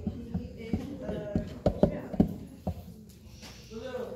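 About a dozen irregular sharp knocks and thuds in the first three seconds, the loudest around the middle, mixed with short bursts of voices; the knocks ease off near the end.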